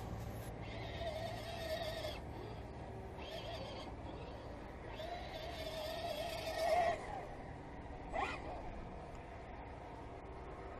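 Electric motor and geared drivetrain of a radio-controlled crawler truck whining as it climbs over dirt and rocks, in three throttle bursts, the longest and loudest near the end. A short rising blip follows about eight seconds in.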